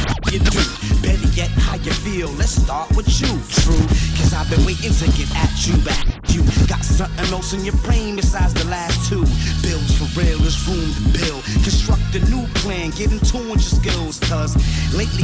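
Hip hop track played by a DJ: rapping over a beat with a heavy bass line, with a brief drop-out about six seconds in.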